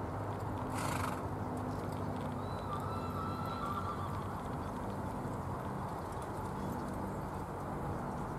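A pair of carriage-driving ponies trotting past on a sand arena, with hoofbeats and the carriage running behind them. A short high whinny comes about three seconds in, and a brief rush of noise about a second in.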